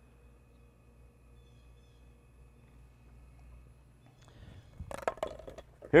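Faint steady low electrical hum from a Bierer GT400-2 ground-set tester driving about 300 amps through a coiled copper grounding cable. Soft handling rustle and a few clicks come in near the end.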